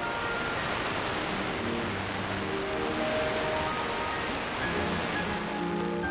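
Auvio HD Radio tuner receiving an FM station on 95.7, playing music with a steady hiss of static under it.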